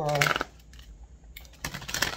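Tarot deck being shuffled by hand: a few sharp card clicks and flicks in the second half.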